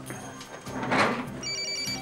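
Mobile phone ringtone: rapid electronic beeping tones starting about one and a half seconds in, for an incoming call that is answered right after. A brief whoosh comes just before it, about a second in.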